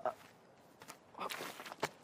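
Young men groaning 'ah' in pain: short, faint moans at the start and again a little past a second in, with a couple of light ticks between them.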